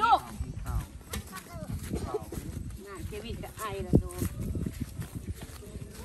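Several people talking and calling out to one another in short stretches, with a single sharp thump about four seconds in.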